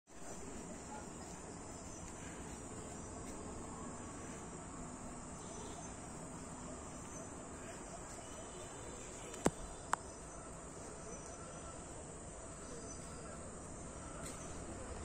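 Faint, steady chorus of night insects. About two-thirds of the way through come two sharp clicks, half a second apart.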